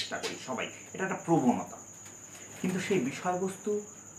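A man talking in two short stretches, over a steady high-pitched tone that runs underneath without a break.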